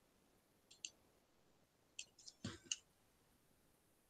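Faint computer mouse clicks against near-silent room tone: a quick double click just under a second in, then a cluster of four or five clicks about two to three seconds in, one of them a fuller knock.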